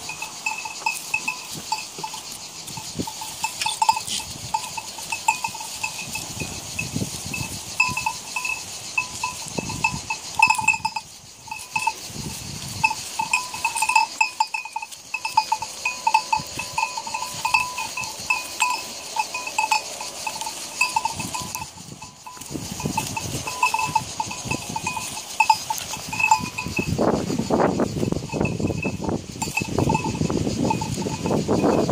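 A small metal bell on a goat jangling irregularly as a group of goats feed and jostle close by, with short scuffing and knocking noises among them. A louder, rough noise comes in for the last few seconds.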